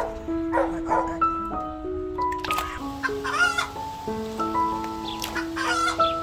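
Background music of held melodic notes, with a chicken clucking several times and a longer, bending call near the middle.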